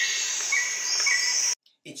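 Insect and bird ambience: a steady, high insect drone with short bird chirps about every half second, cutting off suddenly about one and a half seconds in.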